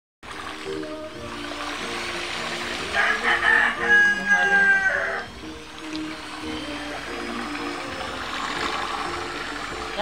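Electric drill with a paddle stirring cement mix in a plastic bucket, under background music. A rooster crows loudly about three seconds in, for about two seconds.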